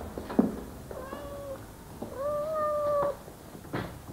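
A house cat meowing twice: a short meow about a second in, then a longer, slightly rising one lasting about a second. A couple of soft thumps come before and after.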